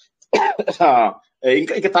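A man's speaking voice, in two stretches about a second apart with a short pause between them.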